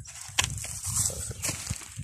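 Footsteps on loose soil and dry leaves: irregular soft low thuds with a light rustle and a few sharper crackles.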